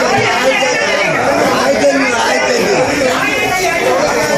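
A fish-market crowd talking over one another, a loud steady chatter of many voices with no one voice standing out.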